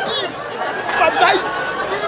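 Several voices chattering and laughing over one another.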